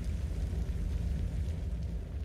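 Low, steady rumble from a music video's opening sound design, without melody or voice, played over the burning-car intro.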